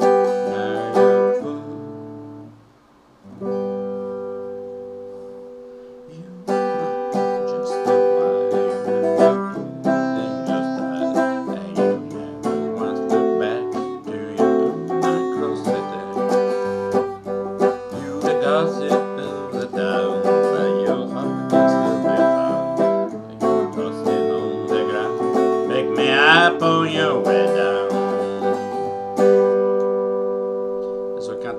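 Les Paul-style electric guitar strung with Gibson pure nickel 11-gauge strings, played in chords. Two chords are struck and left to ring and fade over the first six seconds, then steady chord playing follows, ending on a chord that rings on.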